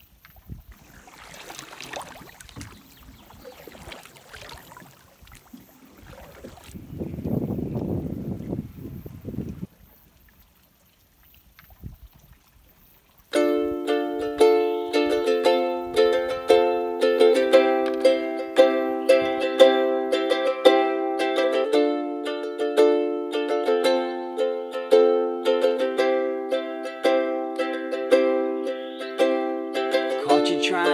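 Solo ukulele strummed in a steady rhythm of chords, starting suddenly a little under halfway through as the song's introduction. Before it, faint irregular noise with a louder low rumble for a couple of seconds.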